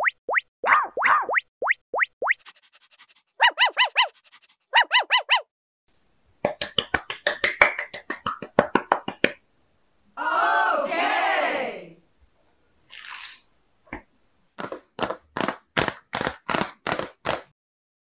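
Edited cartoon sound effects in quick succession: fast rising chirps, two bursts of repeated ringing notes, and rapid runs of clicks. A fuller, wavering voice-like sound comes in the middle, and a brief whoosh follows shortly after.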